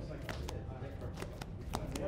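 Trading cards being shuffled and handled in the hands: a run of quick, irregular clicks and snaps.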